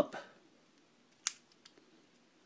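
A single sharp click of plastic parts on a FansProject Quadruple U transforming toy being slid into position, a little over a second in, followed by a couple of faint ticks of plastic handling.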